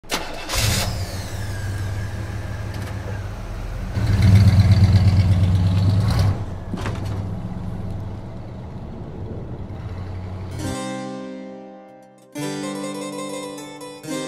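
Car engine starting and running, revving up about four seconds in and then easing off and fading. Harpsichord music begins about eleven seconds in.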